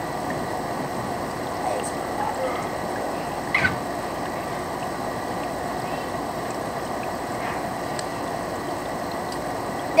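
Room air conditioner running: a steady, even noise, with one short louder sound about three and a half seconds in.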